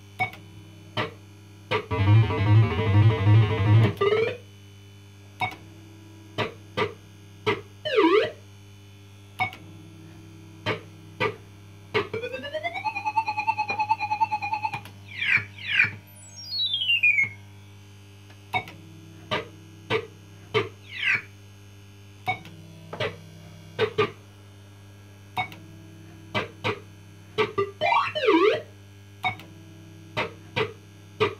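A PCP Blankity Bank fruit machine on System 80 electronics playing its electronic sound effects over a steady hum. There are short bleeps throughout. About two seconds in comes a two-second warbling jingle, around twelve seconds a rising tone that levels off and pulses, and a few seconds later falling swoops.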